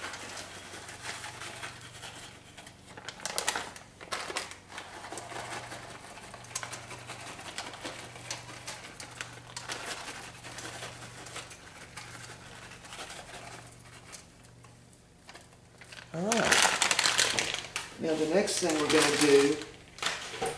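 A small plastic bag of sliced almonds crinkles in the hand in quick, irregular rustles as the almonds are shaken out and sprinkled onto a cake. A voice speaks over the last few seconds.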